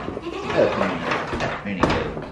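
A goat bleating briefly while being moved across a concrete floor, with a sharp knock near the end.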